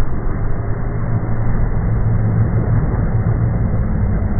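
Loud, steady rushing and churning of water with a deep low rumble as a whale breaches up through a column of spray, swelling in the middle.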